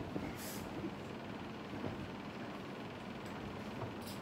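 Steady low background noise with a faint hum and a few soft knocks of movement.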